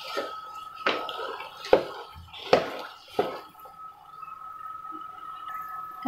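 Metal spoon stirring thick, mushy bread halwa in a steel pot, knocking and scraping against the pot four times in the first few seconds with soft wet sounds in between. A faint steady high whine runs underneath.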